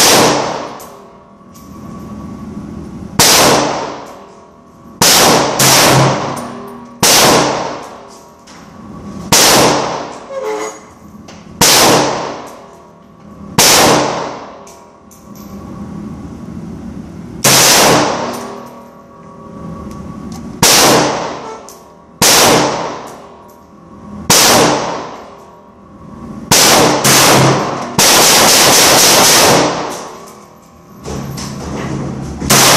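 Romanian PSL (Romak 3) semi-automatic rifle in 7.62x54R firing about twenty shots at an uneven pace, some in quick pairs under a second apart. Each sharp report is followed by a ringing echo off the enclosed booth's walls that dies away over a second or so. Near the end a loud steady noise lasts about two seconds.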